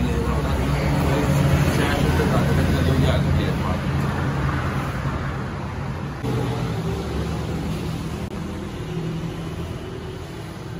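Steady low engine rumble and traffic noise, loudest in the first few seconds and fading somewhat after.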